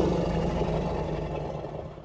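A steady low, rumbling drone of background soundtrack, fading out evenly over the two seconds.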